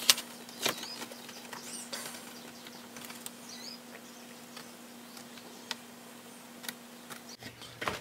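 Light handling sounds of a card template and pencil against the wooden frames of a model ship hull: a couple of sharp clicks at the start and about a second in, then scattered faint ticks and a few brief high squeaks, over a steady faint hum.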